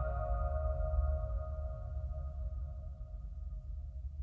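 Bell-like chime tones ringing on and slowly dying away over a low drone, the whole trailer score fading out.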